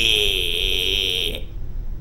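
Digital alarm clock buzzing: a steady high-pitched buzz that cuts off suddenly about one and a half seconds in.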